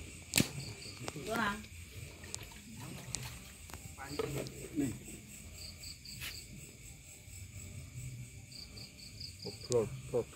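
Crickets chirping in short pulse trains that recur several times, under faint low talk, with two sharp clicks, one near the start and one about six seconds in.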